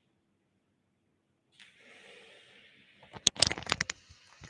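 Almost silent at first, then a faint hiss comes in, and about three seconds in a quick run of loud clicks and knocks: handling noise as a person comes right up to the camera and its microphone.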